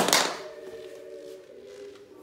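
A sharp knock at the start, a hard toy dropping onto the wooden floor, followed by a faint, steady drone of a few held pitches.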